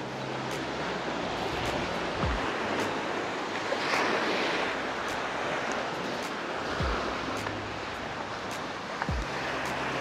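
Sea surf washing over shoreline rocks: a steady hiss of waves that swells about four and seven seconds in. A few short low thumps come through as well.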